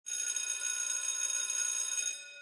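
A bell ringing steadily in one even, many-toned ring that starts abruptly.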